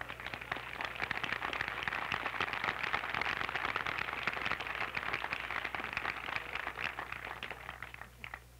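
Crowd applauding, a dense patter of many hands clapping that fades away near the end.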